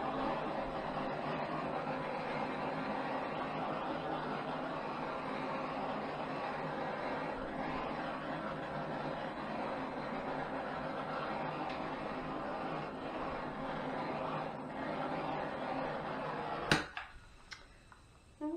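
Handheld gas torch flame running steadily with a hiss over wet acrylic paint. It stops abruptly at a sharp click near the end as the torch is shut off.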